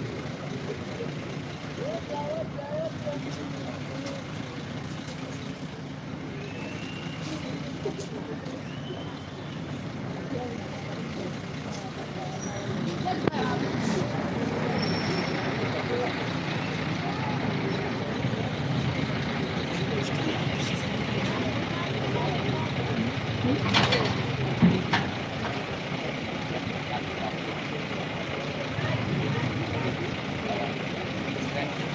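Street noise of a heavy truck's engine running, with scattered voices in the background. The noise swells about halfway through, and one sharp crack comes about three-quarters of the way through.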